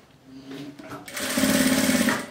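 Sewing machine stitching a seam through layered fabric, starting slowly and running up to a fast, even whirr about a second in.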